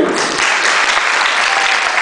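Audience applauding steadily, the clapping starting right at the beginning in answer to a performer being announced.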